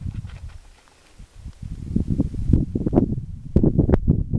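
Footsteps on a gravel road, with a short lull about a second in and sharper crunches near the end.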